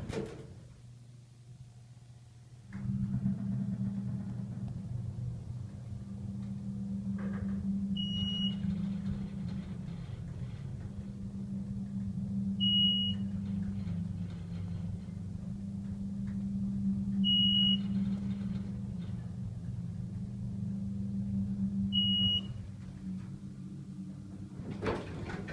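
A 1988 Otis Series 1 hydraulic elevator starts up and rises. A steady low hum from the pump unit begins a few seconds in and eases off near the end as the car levels. A short high beep sounds four times, evenly spaced, as the car passes floors.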